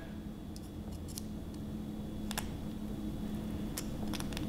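A few faint, scattered metallic clicks of right-angle snap ring pliers handling a snap ring, over a low steady hum.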